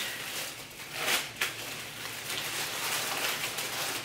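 Packaging rustling and crinkling as a package is handled and cut open, with a couple of sharper crackles about a second in.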